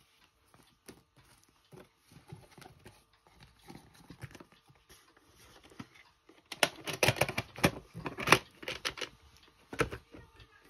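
A VHS cassette and its plastic clamshell case being handled, with faint scattered clicks at first. From about two-thirds of the way in, a rapid clatter of plastic clicks and knocks follows as the tape goes into the case and the case is shut, with one last knock near the end.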